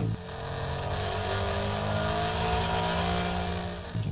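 Ford 2012 Boss 302 Mustang's 5.0-litre V8 pulling hard in third gear at high revs, heard from inside the cabin. The engine note climbs steadily toward about 7,000 rpm.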